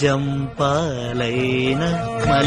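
A man singing in a chant-like, Carnatic-flavoured style: two phrases of long, wavering held notes, the second starting about half a second in, over a steady low drone of music.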